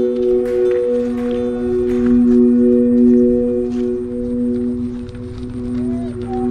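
The bamboo flutes of a 3-metre Vietnamese flute kite sounding in the wind as it flies. They make a steady chord of three low tones that waver slightly in strength.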